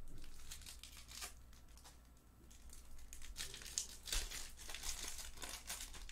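Foil wrapper of a Topps Pristine trading-card pack crinkling and tearing as it is opened by hand: sparse crackles at first, then denser crinkling in the second half.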